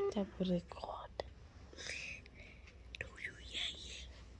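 A short run of flat electronic tones from a smartphone on a video call as the call drops to reconnecting: one steady tone, then two lower tones stepping down within the first half-second. Faint whispery voices follow.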